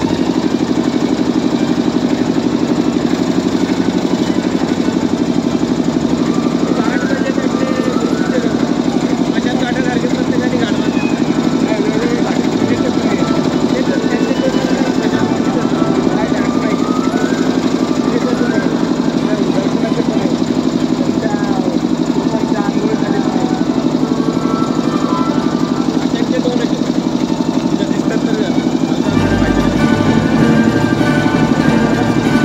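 A boat's engine running steadily, with a continuous mechanical drone. Voices can be heard faintly over it.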